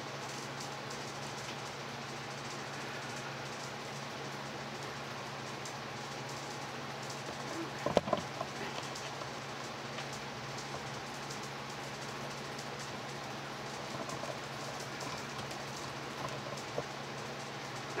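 Steady whooshing of room fans and an air conditioner running, with a low steady hum underneath. One sharp knock about eight seconds in.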